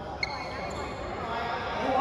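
A badminton racket strikes a shuttlecock once about a quarter second in, a sharp crack with a brief high ring, while people talk in a large echoing hall.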